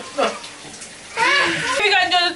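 Shower water running as an even hiss in a small bathroom, with a short vocal sound over it a little past halfway.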